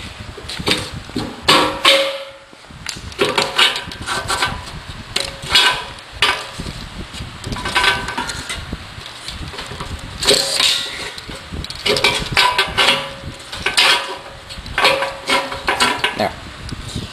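Irregular knocks and short metallic clinks, some briefly ringing, as steel backhoe parts are handled and bumped together.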